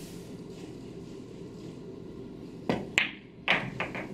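A pool shot: the cue tip strikes the cue ball, then the cue ball clacks into the object ball, which drops into the corner pocket. The four sharp clicks and knocks come quickly one after another in the last second and a half, after a quiet stretch.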